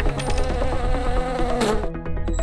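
Sound-effect buzz: a wavering buzzing tone that rises and falls, over a low bass bed, with a short whoosh about a second and a half in.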